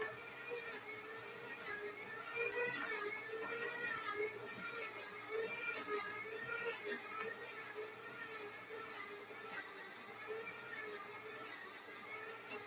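Stand mixer running with its dough hook kneading bread dough: a faint motor whine that wavers up and down in pitch as it works.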